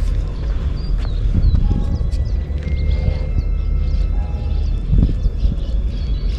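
A baitcasting reel being cranked to retrieve a lure, under a steady low rumble of wind on the microphone.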